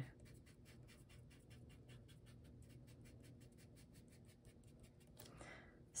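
Near silence with faint rubbing of a fingertip on cardstock, blending a line of charcoal pencil inward.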